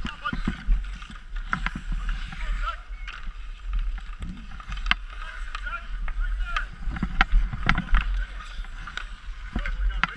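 Ice hockey skates scraping and carving on an outdoor rink, with many sharp clacks of sticks and puck throughout, and high children's voices calling among the players.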